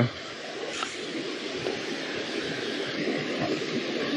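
Shallow river rushing over rocks: a steady, even noise of running water.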